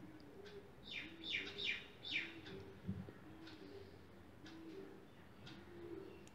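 Faint bird calls: a low cooing note repeated over and over, with a run of quick high chirps in the first couple of seconds.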